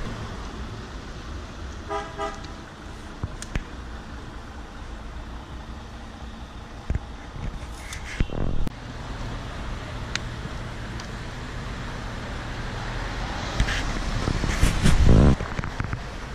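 Street traffic noise with a short car horn toot about two seconds in. A few light knocks follow, and a louder low rumble comes near the end.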